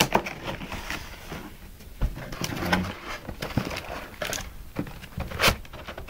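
Cardboard packaging and a plastic bag being handled: irregular rustles, scrapes and small taps as the contents are lifted out of a box.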